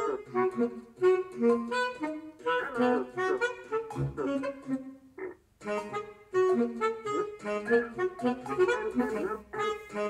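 MIDI playback of an algorithmically generated piece for baritone saxophone and computer: synthesized saxophone-like notes played in quick, short, overlapping lines, with a brief gap about five seconds in.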